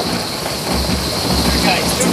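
Steady rush of wind and spray noise on an onboard microphone of an AC75 foiling yacht sailing at about 42 knots, with low wind buffeting through the middle and a faint steady high whine.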